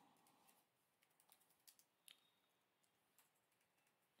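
Near silence with a few very faint computer keyboard keystrokes, spaced irregularly.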